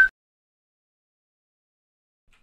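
A held whistled note from a man's lips cuts off abruptly at the very start, followed by dead silence.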